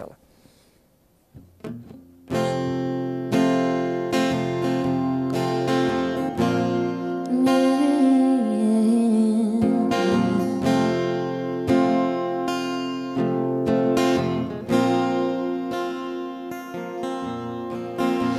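Acoustic guitar starts about two seconds in, strumming sustained chords as a song's intro, played live. A woman's voice sings over it for a few seconds in the middle.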